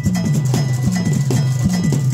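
Dhol-tasha ensemble playing: many stick-beaten dhol drums pounding a driving rhythm of about three strokes a second, with sharp, ringing strokes of the smaller drums over the deep boom of the dhols.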